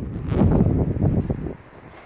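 Wind buffeting a phone's microphone, a loud ragged low rumble that drops away sharply about one and a half seconds in.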